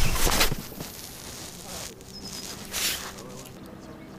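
Clothing brushing and rubbing against a chest-mounted camera's microphone: a loud brush at the start, softer rustling after it, and another brush about three seconds in.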